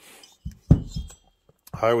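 Chainsaw top end (Hyway aftermarket cylinder and piston) being handled on a workbench: a low thump as the cylinder is set down, then a sharp metallic clink with a brief ring as the metal parts knock together.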